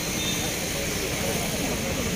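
Crowd of people talking over one another, a steady mix of voices with no single clear speaker.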